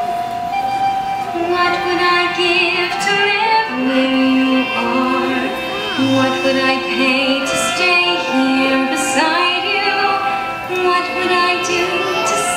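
A woman singing a slow melody in long held notes with vibrato, over orchestral accompaniment.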